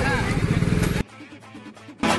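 Scooter and motorcycle engines running close by, with voices over them, for about the first second. The sound then cuts off abruptly to a much quieter passage that leads into background music.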